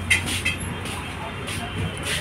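Background street traffic noise: a vehicle engine running with a steady low hum under a general din.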